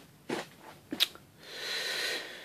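Faint camera-handling noise: a few soft rustles and one sharp click about a second in, then a short soft hiss near the end.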